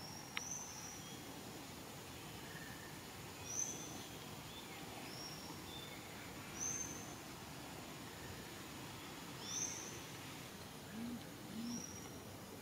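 A bird repeating a short, high whistled note every few seconds over a steady background hiss. There is a sharp click just after the start, and two short low hooting notes near the end.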